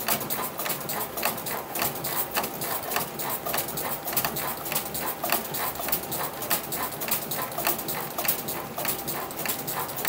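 Easton Ghost Unlimited composite bat being rolled back and forth by hand through a bat-rolling press with green rollers, to break in the barrel. It makes a run of quick, irregular clicks and knocks, several a second.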